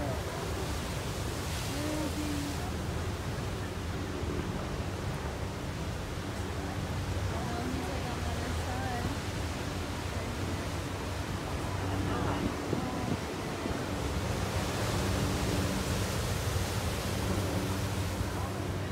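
Heavy surf breaking and washing over a boulder beach: a steady roar of white water that grows a little louder in the last few seconds.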